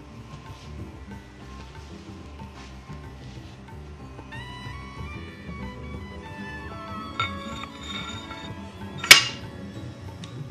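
Instrumental background music throughout, with one loud, sharp metallic clank about nine seconds in as the steel top section of a blacksmith's guillotine tool is set down onto its base on the anvil. A lighter clink comes about two seconds earlier.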